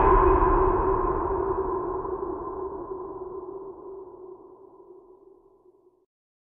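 A sustained ringing tone from the intro's music, two steady pitches dying away slowly over about six seconds until it fades out completely at the end.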